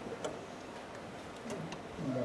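A quiet room with about five light clicks, unevenly spaced, over a faint low background.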